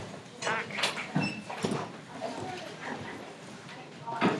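Indistinct voices and short bursts of bustle as a class breaks up, with several brief sounds in the first couple of seconds and softer ones after.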